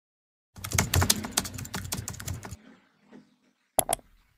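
Rapid typing on a computer keyboard: a dense, uneven run of key clicks lasting about two seconds, followed near the end by two short, sharp clicks.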